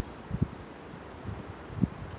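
Light wind noise on a handheld phone's microphone, with three short, soft low thumps.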